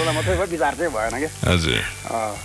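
Speech with a steady hiss behind it: a caller talking over a noisy telephone line.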